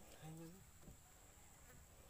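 Near silence broken by a brief insect buzz, like a fly passing close, about a quarter second in, with a faint steady high whine underneath.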